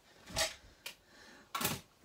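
Brief handling noises of craft tools being moved off to the side: two short knocks or rustles, about half a second and a second and a half in, with a light click between.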